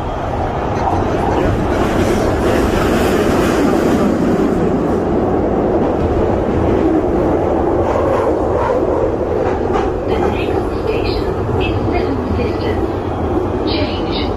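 London Underground train running, heard from inside the carriage: a loud, steady rumble of wheels on rails.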